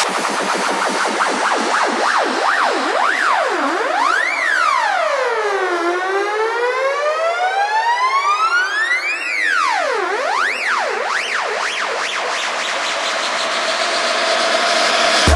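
House music breakdown with the bass and kick dropped out, carried by a siren-like synth tone that sweeps up and down: several quick swoops, then one long slow fall and rise, then quick swoops again.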